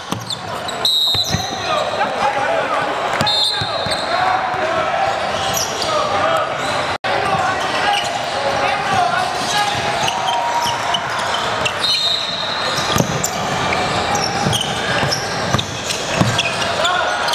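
Basketball game sound in a large gym: a ball bouncing on the hardwood court amid the voices of players and spectators, with a few short high squeaks and hall echo. The sound drops out for an instant about seven seconds in.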